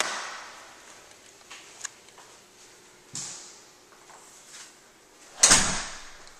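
A door being handled and shut. A sharp knock at the start rings on in the bare room, a softer knock comes about three seconds in, and a loud bang near the end is the door closing.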